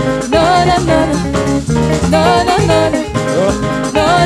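Live band music: two women singing a wavering melody over electric guitar, keyboard, bass and drums, with a steady rhythmic bass line.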